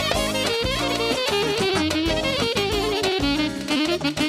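Live band music: a saxophone plays a wavering, heavily ornamented melody over a steady dance beat with plucked or keyboard backing.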